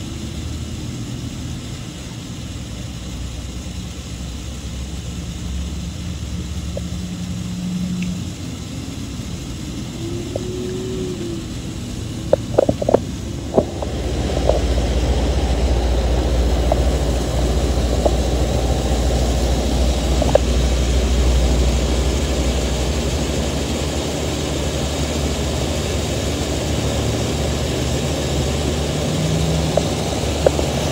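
A motor engine droning steadily in the background. It grows louder about halfway through, with a few sharp clicks just before.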